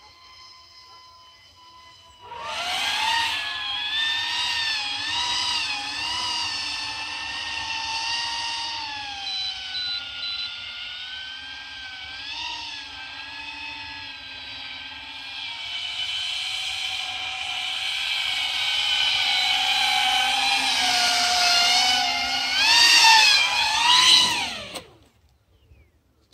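Electric motors and propellers of a home-built VTOL RC plane in flight: a high whine whose pitch wavers up and down with the throttle. Near the end the pitch swings sharply down and up as the plane comes in to land, then the motors cut off.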